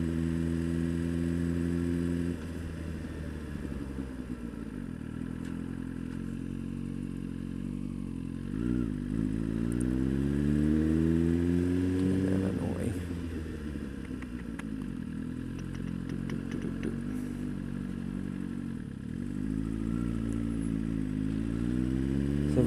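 Suzuki GSX-R sportbike's inline-four engine running under the rider. It holds steady, eases off about two seconds in, then climbs in pitch for several seconds as the bike accelerates. The pitch drops sharply about twelve seconds in and builds again near the end.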